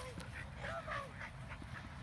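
A dog gives a short, wavering whine about half a second in, over low wind rumble on the microphone.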